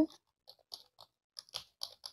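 Computer keyboard being typed on: an irregular run of light key clicks, several a second, getting closer together in the second half.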